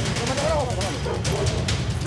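Muffled, overlapping men's voices mixed with the rubbing and knocking of a jostled handheld camera, over background music.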